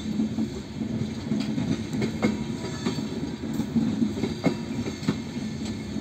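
LHB passenger coaches rolling past on a departing train: a steady rumble of wheels on rail, with a few sharp clicks from the wheels along the way.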